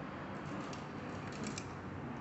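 A few faint metallic clicks of an open-end wrench on the cable terminal nut of a motorcycle starter motor, over low steady background noise.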